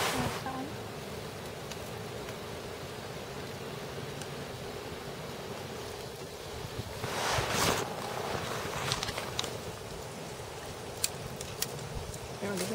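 Wind rushing steadily through bare trees and over the microphone, with two louder gusts, one at the start and one past the middle. A few light clicks near the end.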